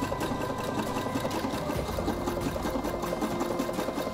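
Electric sewing machine stitching through layers of terry towelling, running steadily with a fast, even rhythm of needle strokes.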